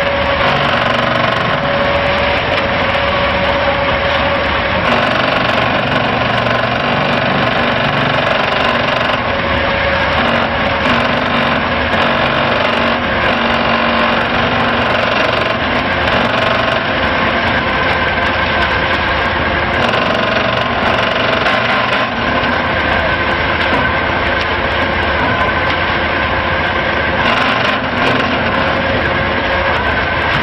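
ABT40 trailer concrete pump and drum concrete mixer running together: a loud, steady machine noise with a few steady whining tones in it.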